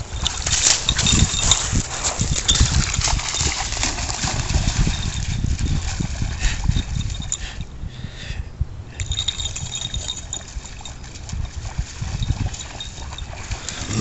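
Water splashing and sloshing as a dog wades and moves through shallow lake water, with many short irregular splashes over a constant low rumble.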